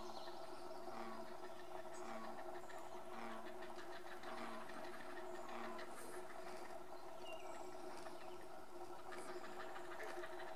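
Great blue heron chicks giving a faint, rapid clacking chatter of begging calls as the parent feeds them at the nest. A steady hum runs underneath.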